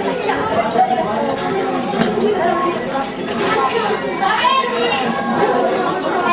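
A group of boys chattering at once, many voices overlapping so that no single word stands out.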